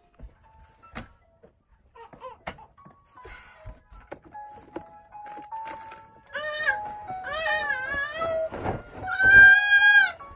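Background music, with a few soft knocks and thumps as bedding is handled. From about six seconds in, a baby fusses and wails in rising, wavering cries, loudest near the end: he wants out of his crib.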